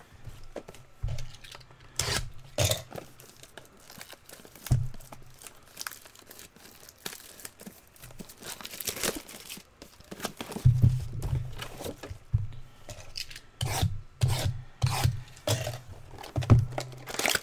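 Cardboard trading-card hobby boxes being handled and moved about on a table: irregular rubbing and scraping of cardboard against cardboard, with several knocks as boxes are set down.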